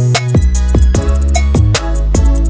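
Background music with a steady drum beat over deep, sustained bass notes.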